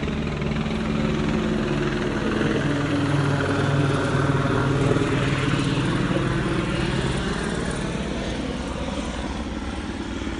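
Helicopter flying overhead, its rotor chop and engine growing louder to a peak about halfway through, then fading away.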